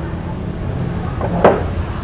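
Steady low rumble of nearby road traffic, with one short sharp sound about one and a half seconds in.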